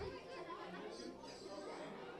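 Indistinct chatter of several children's voices talking over one another.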